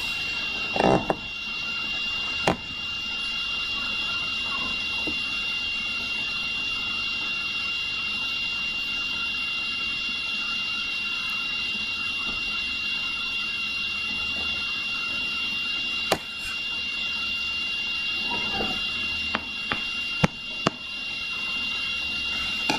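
Steady background hiss with a constant high-pitched whine running under it, broken by a few sharp clicks, one about two seconds in and one about sixteen seconds in. No one speaks.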